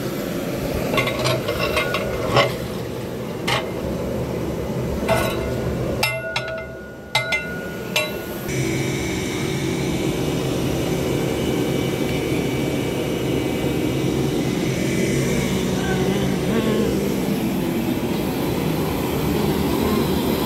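A long metal ladle stirring in a large metal cooking pot, knocking and scraping against it in a string of sharp clinks during the first six seconds. After a short quieter gap, a steady rushing hiss from the gas burner under the pot takes over.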